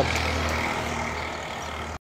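Low, steady rumble of a motor vehicle's engine in the background, slowly fading.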